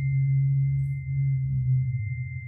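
A steady low drone tone held unchanged, with a faint thin high tone above it.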